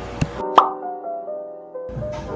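Background music with a single short pop that rises in pitch, about half a second in, typical of an editing transition sound effect. A faint click comes just before it.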